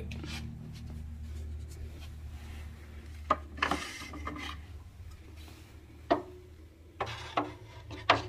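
Plastic fireworks mortar tubes being handled in wooden racks: rubbing and scraping, with about six sharp knocks of tube against tube or rack in the second half.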